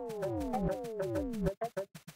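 Electronic music: repeated synthesizer tones that glide steeply downward in pitch over a fast ticking beat, breaking into a rapid stuttering, chopped-up passage about three-quarters of the way through.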